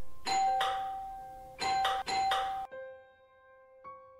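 Doorbell ringing loudly: one long ring that starts suddenly, then two shorter rings, cutting off a little under three seconds in. Soft piano music plays beneath it.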